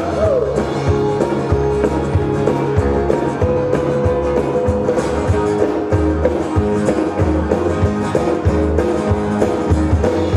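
Live band music with an acoustic guitar being played, steady and continuous.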